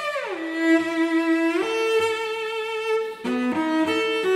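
Solo cello bowed in a slow Adagio. A downward slide at the start settles into a long held low note, which then steps up to a higher sustained note; a few quick, shorter notes come near the end.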